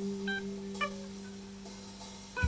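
Electric guitar holding a sustained low note that slowly fades, with two short higher plucked notes about a third of a second and just under a second in.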